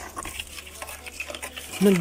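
Gathered shells and crabs clattering and scraping in a bucket of water as a thin metal rod pokes and stirs among them, with a sharp click at the start and small irregular clicks after it.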